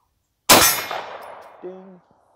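A single AR-style rifle shot about half a second in, with the ping of the bullet hitting a steel target ringing out in its tail as it dies away. A short word is spoken near the end.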